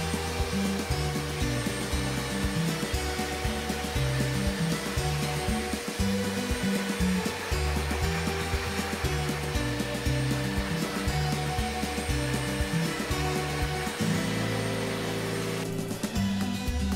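Dog grooming blow dryer blowing air steadily through a damp cocker spaniel's coat, with background music playing underneath.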